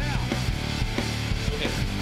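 Background rock music with a steady beat and held bass notes.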